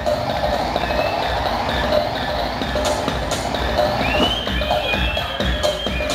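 Electronic dance music from a DJ set, played loud over a club sound system and picked up from the dance floor, with a heavy bass line. About four seconds in, a synth tone glides upward and then holds.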